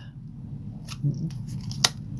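Reading cards being handled: two short clicks about a second apart, a faint one about a second in and a sharper one near the end, as a card is drawn and laid down.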